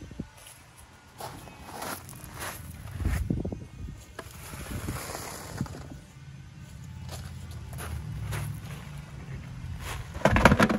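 Footsteps crunching on pea gravel with irregular knocks and scrapes as a wheelbarrow is wheeled away, over a low rumble.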